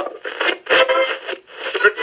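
A thin, tinny voice, as if heard through a radio, starting abruptly out of silence as the intro of a hip-hop track.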